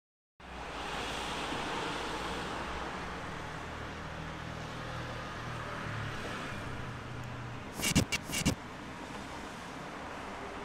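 Street ambience: steady traffic noise with a low engine hum. Near the end comes a quick cluster of three or four short, sharp, loud sounds.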